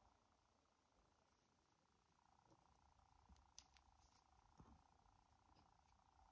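Near silence: faint room tone, with a few faint soft ticks around the middle.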